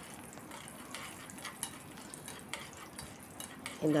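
Cashews being stirred with a metal spoon in a nonstick frying pan of hot fat: scattered clicks and scrapes of the spoon against the pan over a soft, faint frying sizzle.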